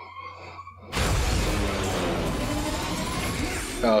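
Action-scene sound effects from a TV episode's soundtrack: after about a second of near quiet with a low hum, a loud, dense rush of crashing, shattering noise starts and holds, with music under it.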